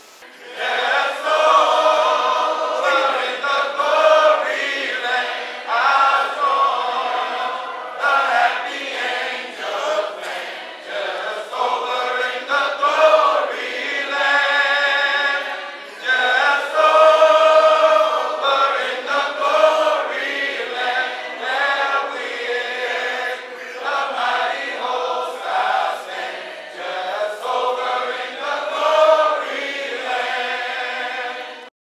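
A choir singing unaccompanied, with voices only and no instruments.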